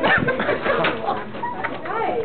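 Teenagers laughing hard, in rapid breathless pulses with high squeaks, easing off toward the end.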